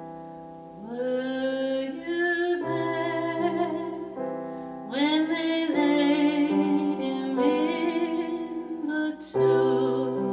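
A woman singing a slow spiritual with piano accompaniment: long held notes with vibrato, in phrases that start about a second in, near the middle, and just before the end.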